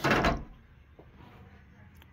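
Retractable door screen's handle bar meeting its frame: one short, loud clatter right at the start, after which it goes quiet.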